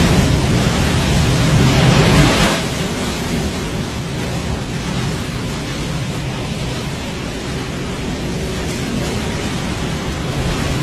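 Sea surf breaking on a beach: a loud rushing wash for the first two and a half seconds, then settling into a steady rush of waves.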